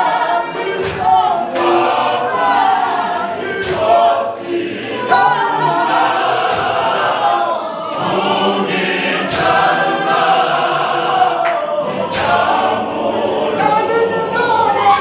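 Mixed gospel choir of men's and women's voices singing unaccompanied in isiZulu, in harmony, with sharp claps scattered through.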